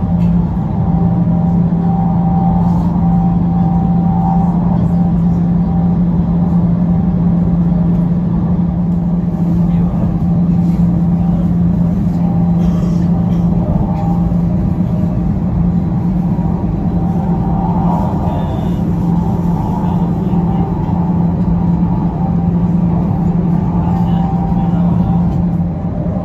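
Steady running noise inside the cabin of a high-speed train at speed: a constant low hum over an even rumble.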